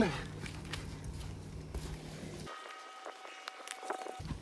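Faint scraping and rustling of loose, dry sand being pushed by hand back into a dug trench over a buried anchor; the background changes abruptly about two and a half seconds in.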